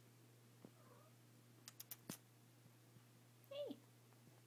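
Domestic cat meowing: a faint short call about a second in, then a louder meow near the end that falls in pitch. A few sharp clicks come in between.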